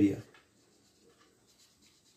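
Faint scratching of a marker pen writing on paper, in short light strokes, after a spoken word ends at the start.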